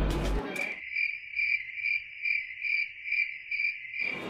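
Cricket chirping: a steady high chirp that pulses about two and a half times a second, starting abruptly under a second in.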